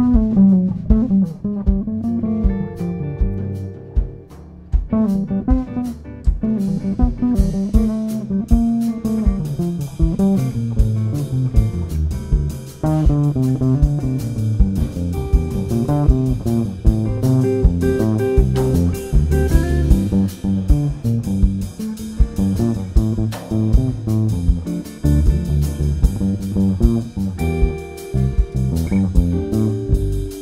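Instrumental jazz band playing live, with an electric bass guitar to the fore playing a moving line over drums. Cymbals come in about seven seconds in.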